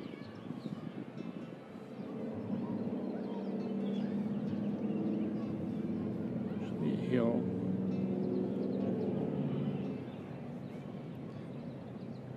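A steady motor hum comes up about two seconds in and drops away near the ten-second mark, with a short falling call about seven seconds in.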